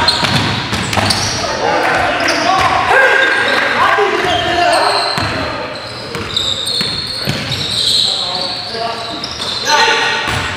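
Live basketball game sound in a gym: the ball bouncing on the hardwood floor, short high-pitched sneaker squeaks, and players' voices calling out, all echoing in the large hall.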